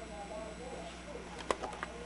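Faint murmur of background voices, with a few sharp clicks about one and a half seconds in, the first the loudest.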